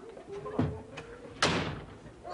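An interior door shuts firmly about a second and a half in, after a lighter knock just before it.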